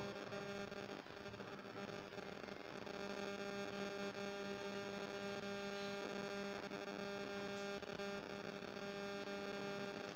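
Steady low electrical hum with a faint overtone above it, unchanging throughout.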